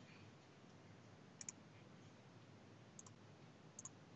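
Near silence broken by a few faint computer mouse clicks: a double click about a second and a half in, a single click around three seconds, and another double click near the end.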